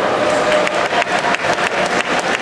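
Audience applauding, a dense patter of many separate claps.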